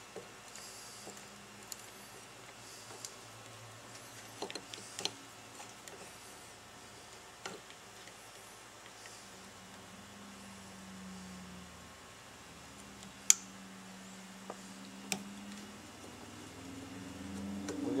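A screwdriver driving small screws into the cover of a Fispa SUP150 mechanical fuel pump: scattered light clicks and taps of tool and screws on metal, the sharpest about 13 seconds in. A low steady hum comes in during the second half.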